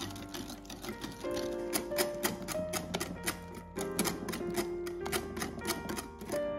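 Wire whisk clicking rapidly against a glass bowl, several times a second, as eggs and sugar are beaten by hand, over background piano music.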